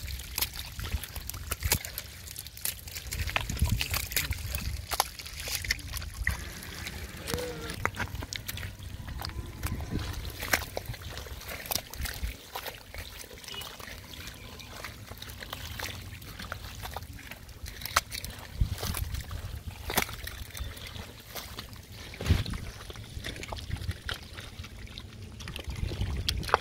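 Hands digging and scooping through thick wet mud: irregular wet squelches, sucking pops and slaps, with muddy water trickling and sloshing.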